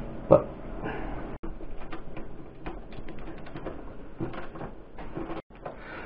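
Faint, irregular small clicks and taps of a nut and terminal hardware being handled and threaded down onto an inverter cable terminal.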